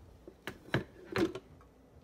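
Glass carafe being pulled out of a Cuisinart drip coffee maker: a few short clunks and clicks of plastic and glass, the loudest about a second in.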